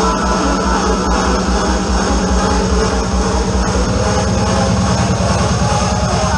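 Hard trance played loud over a club sound system: a fast rolling bass pulse under a steady droning synth note. The bass pattern shifts about four seconds in.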